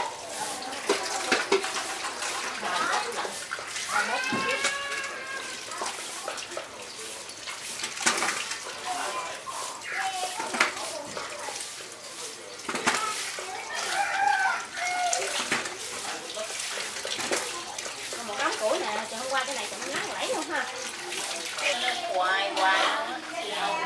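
Tap water running and splashing onto leafy greens being rinsed in a plastic basin, with the clatter of handling leaves and bowls.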